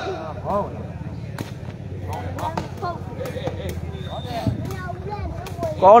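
Sepak takraw ball kicked back and forth in a rally: a series of sharp knocks, the loudest about four and a half seconds in, over crowd chatter.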